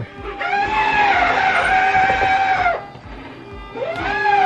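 Travel-trailer slide-out electric motor whining as it strains without moving the slide. It spins up, runs steadily for about two seconds, winds down, then starts again near the end. The owner says it acts as though it is bound up.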